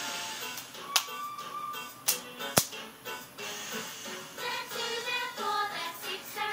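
Music from a children's television programme playing through a TV's speakers. Three sharp clicks come in the first half, the last the loudest, and a clearer tune takes over from about four seconds in.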